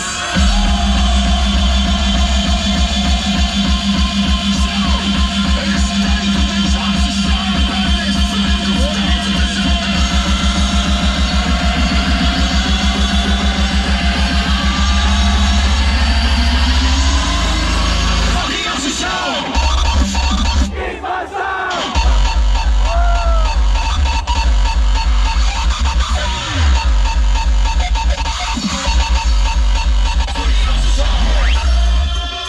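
Hardstyle DJ set played loud over a festival PA and recorded from the crowd: heavy distorted kick drums on a fast, steady beat. A rising sweep builds, the kick drops out for a few seconds about two-thirds of the way in, then comes back.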